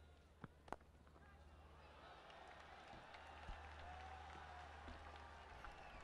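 A couple of sharp knocks about half a second in, the cricket bat striking the ball, then faint stadium crowd noise slowly swelling as the ball runs to the boundary for four. A low steady hum sits underneath.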